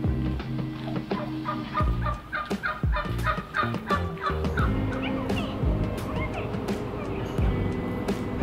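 A turkey gobbling: a rapid rattling run of calls lasting about two seconds, starting about two seconds in, over background music.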